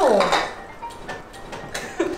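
A voiced exclamation falling in pitch right at the start, then light clinks of dishes and metal pot lids being handled on a table.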